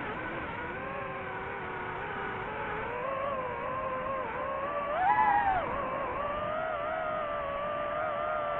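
Quadcopter drone's motors and propellers whining steadily. The pitch wavers as it flies and rises sharply and louder about five seconds in, as the motors speed up.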